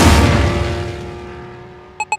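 A loud, deep rumble that fades away steadily over the two seconds, with a short high electronic blip right at the end.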